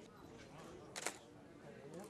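A sharp, brief click about a second in, over faint distant voices and quiet outdoor ambience.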